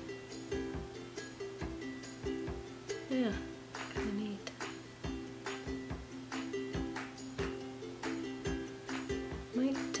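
Background music of plucked strings with a steady strummed beat, about two strokes a second.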